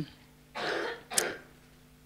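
A woman clearing her throat close to a handheld microphone: a short rasp about half a second in, then a sharp click and a brief breathy noise just after a second.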